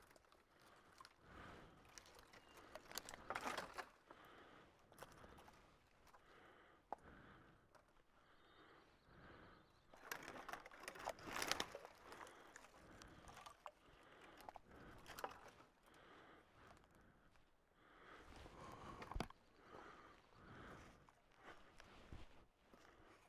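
Faint crackling and rustling of dry branches and footsteps in deadfall, with a few sharp snaps, as someone climbs over and handles fallen trees.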